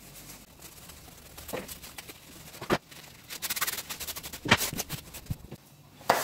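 Taffeta fabric being worked by hand as a sewn strip is turned right side out: soft rustling and scrunching, with a sharp click about halfway, a quick run of crackly ticks soon after and a couple of louder snaps later.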